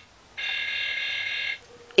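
Electronic laser sound from a Toy Story Collection Buzz Lightyear figure's wrist laser: a steady buzzing tone that breaks off briefly just after the start, then sounds again for about a second.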